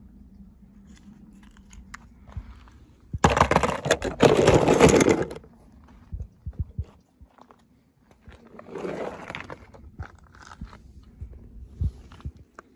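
Crunching and scraping on rocky, gravelly ground in two loud bursts, a long one about three seconds in and a shorter one near nine seconds, with faint scattered clicks between.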